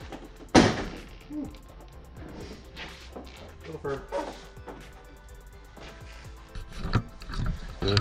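A sharp plastic snap about half a second in, then scattered softer clicks and knocks as a 2005 Honda Civic's plastic front bumper cover is worked loose from its retaining clips by hand.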